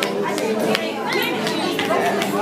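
Indistinct chatter of several voices in a large room, with a few sharp clicks.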